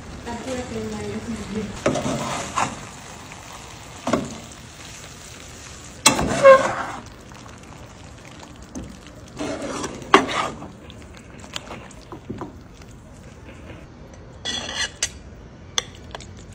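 A spatula scraping and knocking against a cast-iron skillet while tortilla chips in salsa are stirred, in several separate strokes over a steady low frying sizzle.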